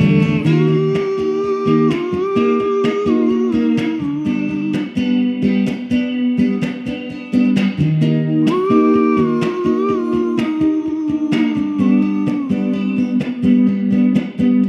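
Stratocaster-style electric guitar played with quick, even pick strokes, chords ringing and changing every second or two.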